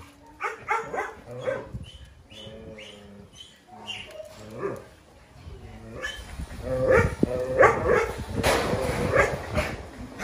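Dogs barking, whining and yelping as they play together, the calls short and overlapping. They grow louder and busier in the second half.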